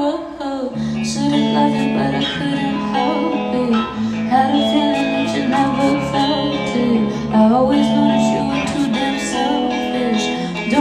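A woman singing a slow song into a handheld microphone, holding long notes, over a guitar accompaniment.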